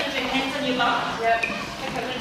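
Quiet, low voices over room noise.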